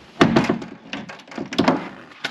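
Fibreglass head-compartment door in a boat's console being shut: a few sharp knocks and clicks about a quarter second in, then another group around a second and a half in.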